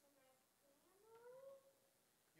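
Faint, high voice of a young child speaking, with one drawn-out syllable that rises in pitch about a second in.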